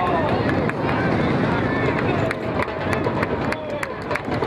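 Distant shouting voices of rugby players and spectators over a steady outdoor rush of noise. From about two seconds in, a quick run of sharp clicks comes through.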